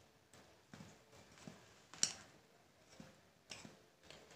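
Metal spoon tapping and scraping against a small glass bowl of flour as flour is spooned out over the batter: a few faint, irregular clicks, the sharpest about two seconds in.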